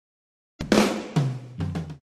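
Drum kit struck about three times in quick succession, starting about half a second in. The hits have low ringing tones and are cut off abruptly at the end.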